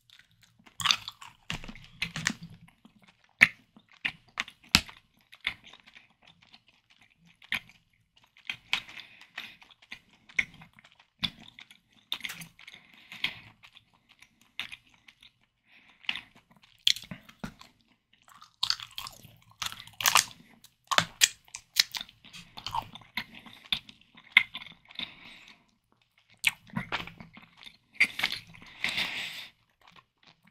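Close-miked chewing of a sugar-coated chewy candy stick: wet mouth sounds and sharp little clicks in irregular bursts, with short pauses between them.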